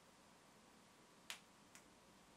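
Near silence: faint room tone broken by two short, sharp clicks, the second fainter, about half a second apart.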